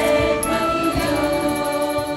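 A large group singing together over music, with hands clapping along.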